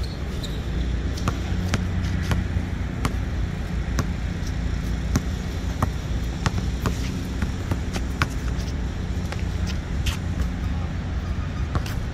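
Basketball bouncing irregularly on an outdoor hard court as it is dribbled, sharp separate bounces over a steady low rumble.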